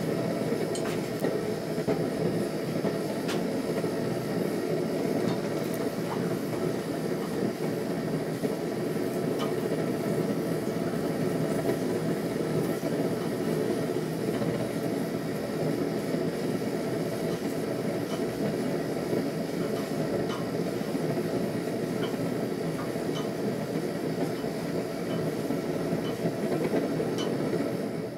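Steady low roar of a gas forge burner running during the oil quench of a hot 5160 steel blade, with a few light metallic clicks from the tongs.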